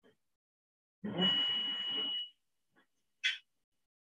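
Cath-lab imaging equipment beeping: one steady high electronic tone lasts about a second over a low muffled rumble, then a short high chirp follows near the end. This is the kind of tone sounded while an X-ray angiogram run is recorded.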